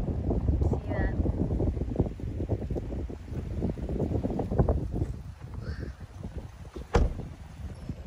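Wind buffeting the phone's microphone outdoors: a gusty low rumble that surges and eases, with a sharp click about seven seconds in.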